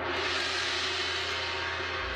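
A song's backing track begins abruptly at the very start: its intro opens with a sustained, steady wash of sound over a low held tone.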